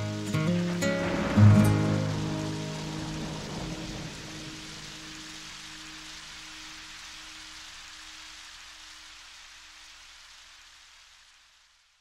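The song's last acoustic guitar chords ring out in the first couple of seconds. They leave a steady rain-like hiss that slowly fades away and stops just before the end.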